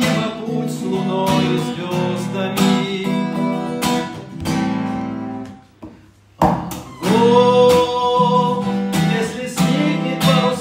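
Acoustic guitar strummed in chords with a man singing along. The playing nearly stops briefly a little past halfway, then the strumming and singing pick up again.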